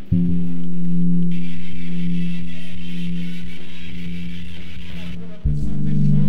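Music of long, held, low notes with a guitar-like sound. The chord changes right at the start and again near the end.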